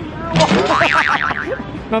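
A person's high-pitched vocal squeal, its pitch swinging rapidly up and down, starting about half a second in.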